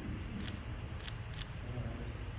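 Camera shutter clicking three times, short sharp clicks over a low steady room hum.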